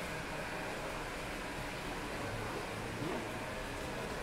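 Steady room tone of a large indoor storage hall: an even hiss with a faint low hum, no distinct events.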